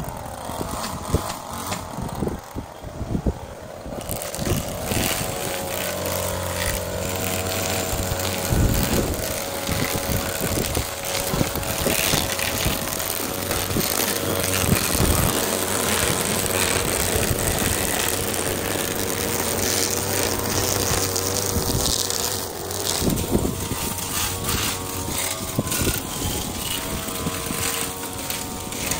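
Engine string trimmer cutting grass along a fence line, quieter and uneven for the first few seconds, then running steadily at cutting speed.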